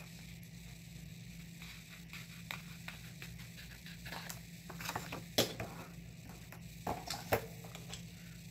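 Small craft scissors trimming a sticker and paper planner pages being handled and pressed down: a few scattered light clicks and rustles, the sharpest about five and a half seconds in, over a steady low hum.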